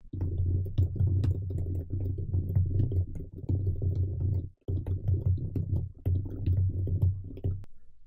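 Computer keyboard typing: a quick run of keystrokes over a low hum, with a brief pause about halfway through.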